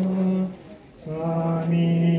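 A man's voice chanting in long, held notes, typical of Buddhist devotional chanting. The chant pauses for about half a second about half a second in, then resumes on a slightly lower note.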